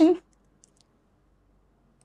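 A woman's voice finishing a word, then near silence.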